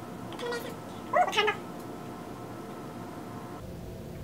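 Two short, high-pitched meow-like calls, a faint one about half a second in and a louder one about a second later, over a faint steady hum that cuts off near the end.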